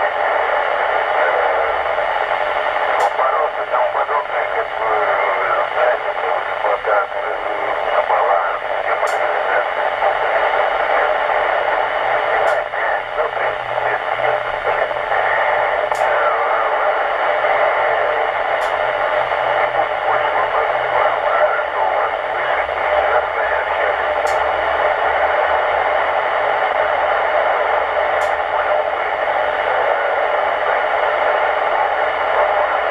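A weak FM signal on the 2 m band coming through a Yaesu transceiver's speaker: steady receiver hiss with faint, fading speech from a distant EchoLink node. Sharp clicks sound every few seconds as the low-noise amplifier is switched on and off. With the amplifier off, the noise turns sandy and crackly.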